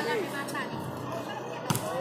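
A single sharp slap of a hand striking a volleyball near the end, over faint background voices.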